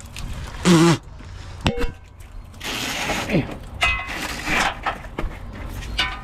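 Hand work on an AC hose under a truck chassis: scraping and rubbing as the hose is worked loose, with a sharp metallic clink a little under two seconds in and short rubbing squeaks a little after three and four seconds.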